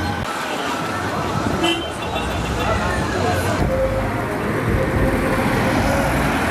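Roadside traffic: vehicles running past on a street, with a vehicle horn sounding in the second half and voices in the background.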